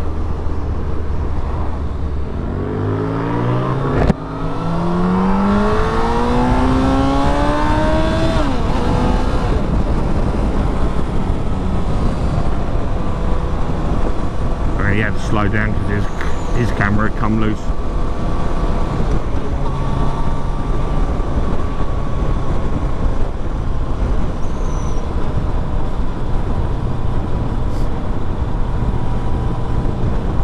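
Suzuki Hayabusa's four-cylinder engine accelerating hard, the revs climbing, a brief break about four seconds in as it shifts gear, then climbing again. From about ten seconds on it holds a steady cruise under constant wind noise on the microphone.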